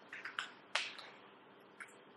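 A few short, light plastic clicks from whiteboard markers and their caps being handled, about four in all, the sharpest a little under a second in.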